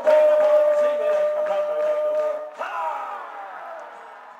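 Male voices holding the final sung note of a comedy song for about two and a half seconds, then a falling shout and audience cheering that fade away.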